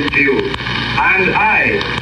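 Speech in an old, radio-quality recording, with steady hum and hiss under the voice.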